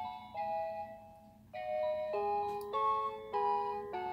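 Musical Ferris wheel decoration playing its built-in electronic tune: a melody of held notes that drops out about a second in, then comes back with fuller chords.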